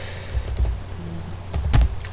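Computer keyboard typing: a few quick key presses about half a second in, then another short run near the end as a command is typed and entered.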